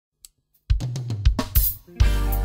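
Drum kit coming in about two-thirds of a second after silence: a quick run of bass drum thumps, snare and hi-hat strokes, with a cymbal wash near the end.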